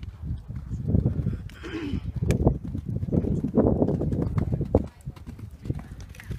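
Horse cantering on sand arena footing, its hoofbeats coming as a rapid run of dull low thuds that grow denser and louder in the middle, then drop away a little before the end.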